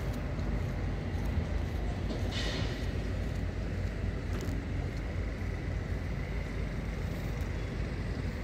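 Steady low rumble of heavy diesel engines, with a faint steady whine above it and a short hiss about two and a half seconds in.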